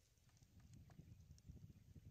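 Near silence: faint outdoor ambience, a low uneven rumble with a few soft ticks.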